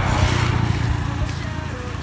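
A motor vehicle passing on the road: a rumble with road noise that is loudest at the start and fades over a couple of seconds.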